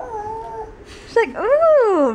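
A baby vocalizing: a short, even coo, then about a second in a loud, drawn-out squeal that swoops up and down in pitch several times.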